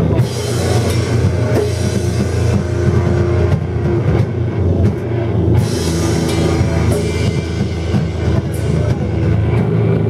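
Sludge metal band playing live: heavy distorted guitars and bass over a drum kit, with cymbal crashes near the start and again about halfway through.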